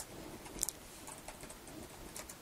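Computer keyboard being typed on: a handful of separate key clicks, the loudest a quick double click about half a second in.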